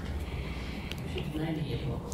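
A short stretch of quiet, indistinct speech around the middle, over a steady low room hum.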